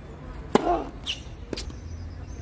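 A tennis serve: the racket strikes the ball with one sharp, loud crack about half a second in, accompanied by a short grunt from the server. A fainter knock follows about a second later.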